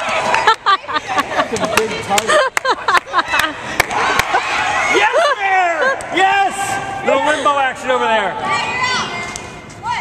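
Several women shouting and calling out high-pitched during a dodgeball game. For the first few seconds, rubber dodgeballs smack and bounce on the court floor in quick, irregular knocks.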